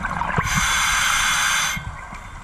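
A scuba regulator hissing for just over a second as the diver draws a breath, with small bubbling around it.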